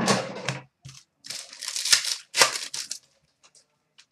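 Trading-card pack wrapper being torn open and the cards inside handled: a sharp rip at the start, then two longer crinkling, tearing bursts in the middle.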